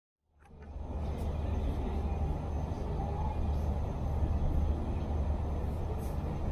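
Steady outdoor urban ambience: a deep rumble with a faint murmur of voices, fading in over the first second.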